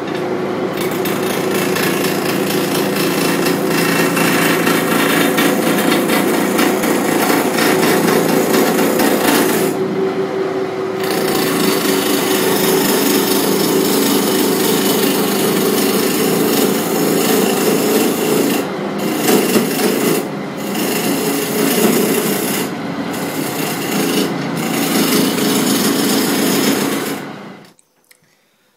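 Roughing gouge cutting a spinning mahogany and spotted gum blank on a wood lathe, truing the octagonal blank round: a loud, continuous rasping cut over a steady low hum. The cutting noise lets up briefly about ten seconds in and a few times in the last third, and it all stops shortly before the end.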